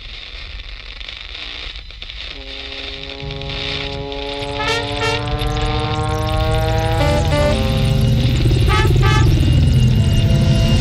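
A live band's instrumental intro. Held chords come in about two seconds in over a low steady rumble, the chord changes around seven seconds in, and the music grows steadily louder.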